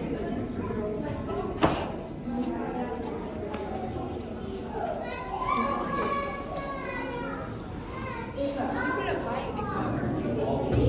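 Children's voices, talking and calling out in the background, with one sharp click a little under two seconds in.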